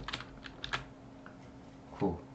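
Computer keyboard keys being typed: a quick run of about six short clicks in the first second, then one faint click.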